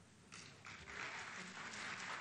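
Audience applause, faint, starting a moment in and swelling over the next second.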